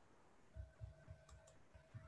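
Near silence, with a run of faint low thumps starting about half a second in and two light clicks near the middle.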